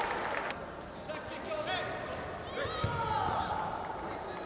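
Arena audience applauding, with the clapping breaking off about half a second in. After that, scattered voices call out across the large hall.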